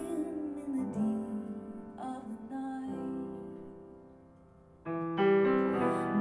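A grand piano played live in a slow ballad. A woman's sung phrase ends about a second in, then single piano chords, struck about once a second, ring out and fade almost away. A louder chord near the end brings the singing back in.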